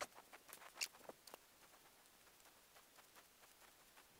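Faint small clicks and scrapes in the first second and a half, then near silence: gloved hands fitting a quarter-inch rubber hose and clamp onto a fuel tank sending unit.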